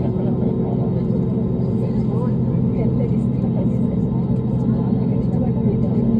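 Steady low drone inside a jet airliner's cabin on the ground, its engines running with several steady humming tones, under the faint chatter of passengers.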